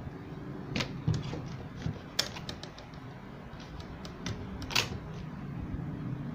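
A black picture frame being handled and set against wooden boxes on a table: a few sharp clicks and light knocks at uneven intervals, loudest about one, two and five seconds in.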